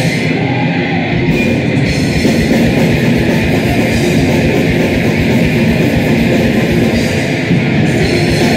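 Thrash metal band playing distorted electric guitars, loud and continuous throughout.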